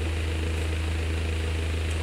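A steady low electrical hum from a public-address system in a large hall, with a faint murmur of room noise over it.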